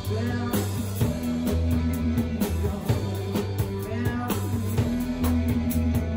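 A rock band playing an instrumental passage, with guitars over a bass line and a drum kit with cymbal hits.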